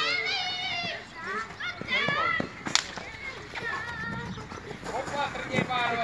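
Voices calling and shouting, opening with one long drawn-out call, with a single sharp crack a little under three seconds in.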